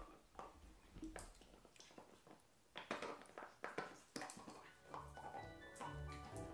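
Faint, irregular clicks, knocks and rustles of a small dog chewing a toy and shifting on a padded faux-leather bed. Background music comes in about five seconds in.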